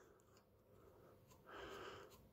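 Near silence: room tone, with a faint breath near the end.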